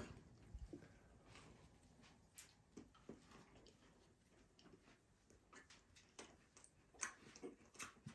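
Near silence with a few faint, scattered clicks: someone quietly biting and chewing a toasted Pop-Tart.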